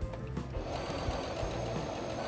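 Singer Patchwork electronic sewing machine stitching at a steady speed, starting up about two-thirds of a second in after a few light clicks.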